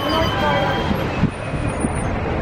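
Amusement-park background: a steady low mechanical rumble with voices mixed in, and a couple of brief high electronic tones.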